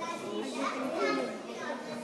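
Indistinct chatter of children's voices, several talking at once, loudest about a second in.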